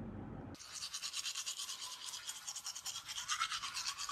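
Teeth being brushed with a toothbrush: rapid, even scrubbing strokes, starting about half a second in.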